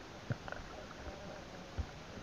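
Muffled underwater sounds of a hand working a fishing net among river stones: faint scattered clicks and knocks, with two short low thumps, one about a third of a second in and one near the end.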